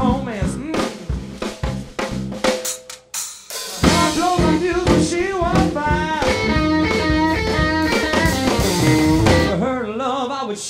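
Live blues band playing electric guitar, bass and drums. Sharp drum hits open it, the band drops out briefly about three seconds in, then comes back in full with wavering, bent lead notes.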